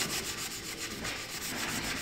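Hand sanding with a sanding block rubbed rapidly back and forth over a chalk-painted wooden cigar box, a steady scratchy rasp of quick, even strokes. The paint is being sanded through at the edges to give a distressed finish.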